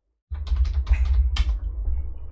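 Typing on a computer keyboard: a quick run of keystrokes starting about a third of a second in, as a password is entered. There is one sharper keystroke about one and a half seconds in.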